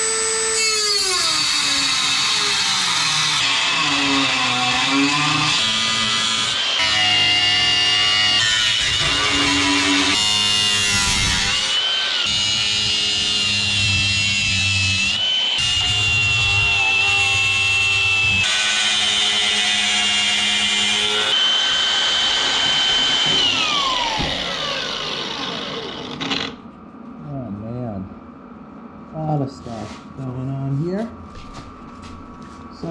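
Electric grinder with a cutoff wheel cutting through rusted sheet steel: a loud high whine over harsh grinding noise, with a few short breaks. Near the end the whine falls in pitch as the wheel spins down and stops.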